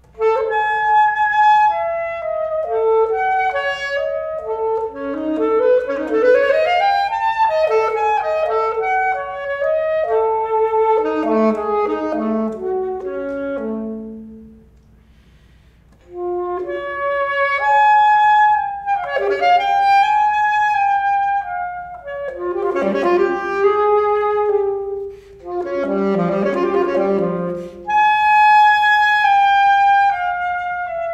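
Unaccompanied alto saxophone playing quick runs of notes mixed with held tones. It breaks off briefly about halfway through, then goes on with more phrases.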